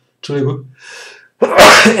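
A man sneezes loudly about one and a half seconds in, into his raised fist, after a short voiced build-up and a quick breath in.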